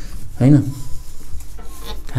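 A whiteboard being wiped clean, with rubbing strokes across the board surface.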